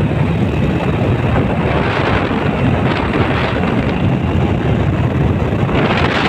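Wind buffeting the microphone over the steady engine and road noise of a moving two-wheeler.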